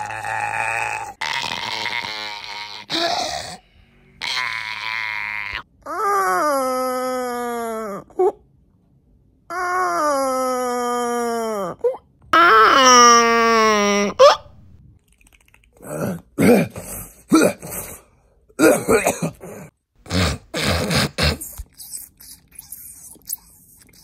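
A man's exaggerated, mock sleep noises: rough, noisy snore-like breaths, then three long moans that fall in pitch, the last the loudest, then a string of short grunts.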